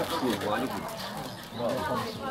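Several people talking around a shared meal table.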